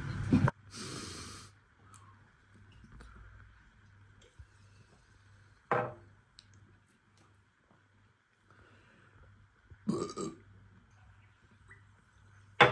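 A man burping: a short belch about six seconds in and another about ten seconds in.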